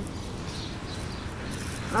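Steady outdoor background noise: an even hiss over a low, irregular rumble.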